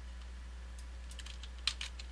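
A few quick computer keyboard and mouse clicks, bunched in the second half, the sharpest one near the end, over a steady low hum.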